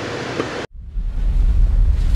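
Faint car-cabin hum, then an abrupt cut to a deep rumbling whoosh that swells: the build-up sound effect of a channel logo intro.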